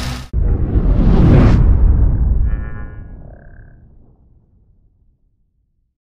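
A running engine's idle cuts off abruptly a moment in. It is replaced by an outro title sting: a low cinematic rumble and whoosh that swells for about a second, brief bright ringing tones near the middle, then a fade away over the next few seconds.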